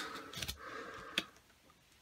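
Faint rustle of a clear plastic record sleeve as a picture-disc single on its card backing is turned over in the hand, with a few light clicks about half a second in and one just after a second in.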